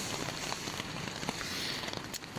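Steady patter of rain on the hammock's tarp, an even hiss with scattered light ticks of drops.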